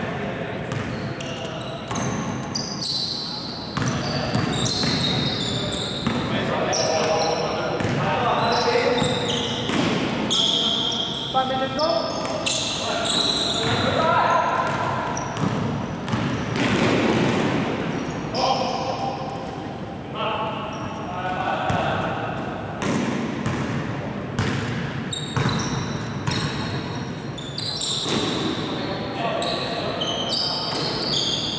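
A basketball being dribbled on a sports-hall court, the bounces echoing in the large hall, with short high squeaks from players' shoes on the floor and voices calling during live play.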